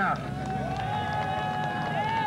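Several voices holding a long, high cheer, wavering slightly and falling in pitch as it dies away at the end.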